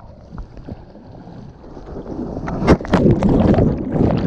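Shorebreak wave breaking over a GoPro held at water level: the water noise builds, a sharp crash comes a little under three seconds in, then loud churning whitewater as the camera is tumbled and goes under.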